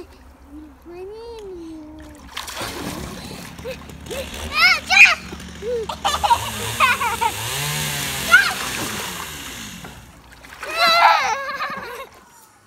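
Water splashing and sloshing in an inflatable paddling pool as two small children move about in it, heaviest in the middle of the stretch. Short high-pitched children's voices and calls break in several times.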